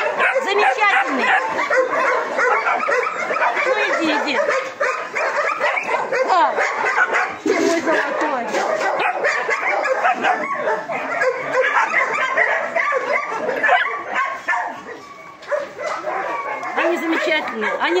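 A group of puppies yipping and whining nonstop, many high calls overlapping, with a brief lull about fifteen seconds in.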